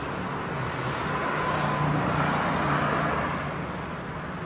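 Small coloured-smoke fireworks hissing as their fuses burn and they start pouring out smoke; the steady hiss swells in the middle and then eases slightly.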